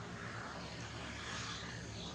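Distant engine noise, swelling and then easing over about two seconds, with no animal calls.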